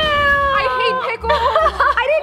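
Young women squealing in disgust: one long, high, held cry that ends about a second in, overlapped and then followed by quick, warbling squeals.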